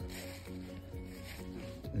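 Quiet background music of slowly changing held notes, with a soft, patchy noise over it.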